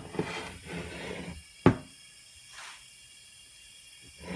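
Short hiss of compressed air as the airline is disconnected from the pressurised two-stroke crankcase, then a single sharp knock as the aluminium engine is handled on the bench.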